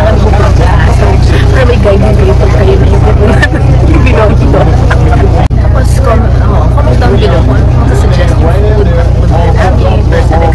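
Steady low drone of a bus engine heard inside the passenger cabin, with voices talking over it.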